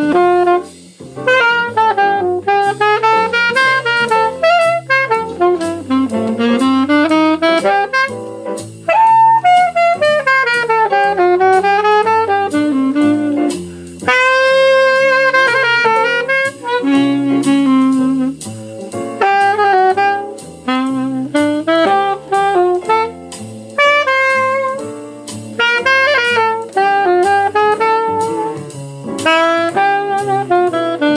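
Yamaha-made Vito student alto saxophone played as a jazz melody, in phrases with runs up and down and a long, bright held note about halfway through. A steady beat with a bass line runs underneath.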